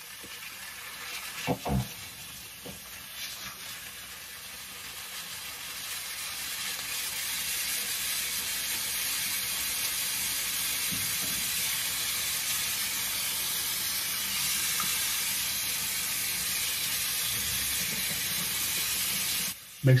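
Water running from a bathroom faucet into the sink, a steady splashing hiss that grows louder over the first several seconds and cuts off suddenly near the end. A couple of short knocks come about a second and a half in.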